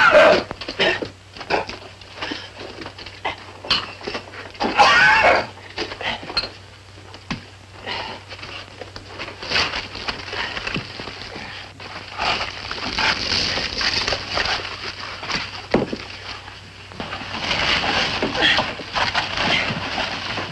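Men grunting and breathing hard with effort, with a loud exclamation-like burst at the start and another about five seconds in, over scattered knocks and clatter of stones in a rock tunnel.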